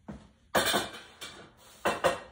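Household objects being set down with two sharp knocks, the first about half a second in and the second near the end.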